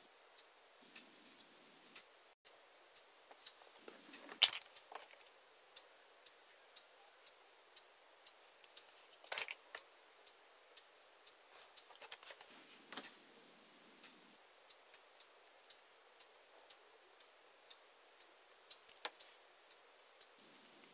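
Quiet handling sounds of a plastic jelly cup and crocheted pieces on a bamboo skewer: scattered small clicks and taps, with a couple of louder clicks about four and a half and nine and a half seconds in.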